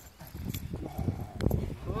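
A protection dog gripping and tugging on a padded bite sleeve: low scuffling with three sharp cracks, one at the very start, one about half a second in and one about a second and a half in.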